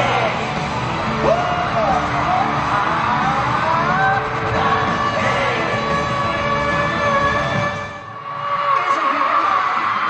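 Live K-pop concert sound in a large hall: amplified music with singing and fans yelling. The level dips briefly about eight seconds in, and the bass is thinner for a moment after.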